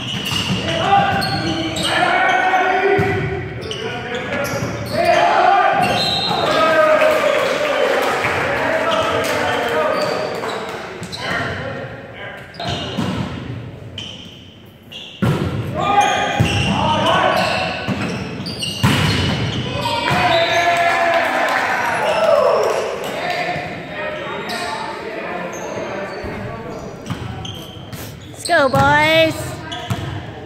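Indoor volleyball rally in a reverberant gym: the ball struck repeatedly with sharp smacks while players and spectators shout and call out. There is a quieter lull about halfway through, and a short high squeal near the end.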